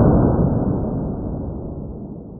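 Pistol shot from a Sig Sauer 1911 .45 played back in slow motion: the low, muffled, drawn-out tail of the boom, fading steadily.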